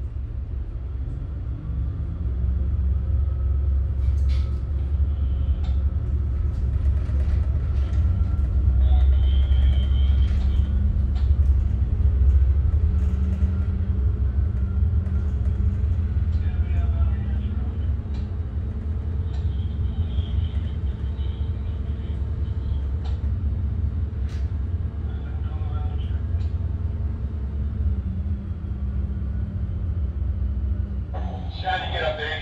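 Tugboat's diesel engines running under power, a deep rumble heard inside the wheelhouse that grows louder over the first ten seconds or so, then eases back a little and holds steady.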